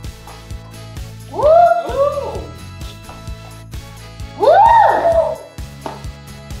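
Background music with a steady beat. A person cheers "woo" with a rising-then-falling pitch about a second and a half in, and again twice near four and a half seconds.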